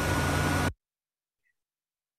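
A burst of loud hiss-like static with a steady high whistle tone through it, lasting just under a second and cutting off suddenly.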